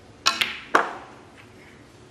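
Snooker cue tip striking the cue ball, and the cue ball clicking into the blue as the blue is potted. Three sharp clicks come within the first second, the last the loudest with a short ring.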